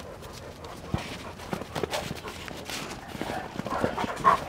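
An adult Central Asian Shepherd Dog growling, low and uneven, at a puppy through a metal kennel fence, with scattered short knocks and scuffs.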